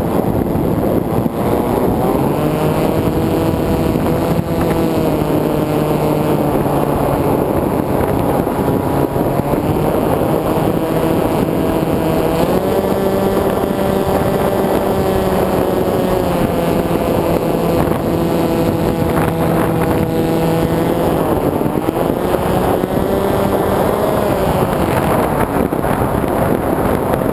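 Motor and propeller of an FPV flying wing heard from the onboard camera in flight: a steady whine whose pitch steps up about halfway through, drops near the end and rises again as the throttle changes, over constant wind rush on the microphone.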